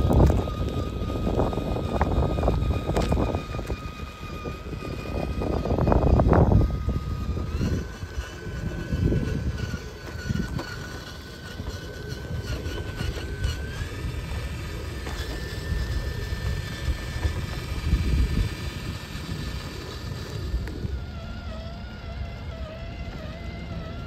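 Small brushless motor of an RC rock crawler, a Hobbywing Fusion Pro, giving a steady high whine that steps up in pitch twice as the truck creeps along, then wavers near the end. Underneath is low rumbling and crunching as the tyres roll over gravel and rubble, loudest in the first few seconds.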